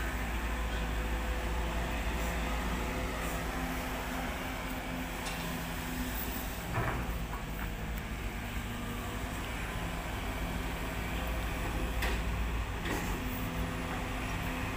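Diesel engine of a Sumitomo amphibious long-reach excavator running steadily while it dredges river mud, its drone shifting slightly in pitch with the work. A couple of brief knocks sound about halfway and near the end.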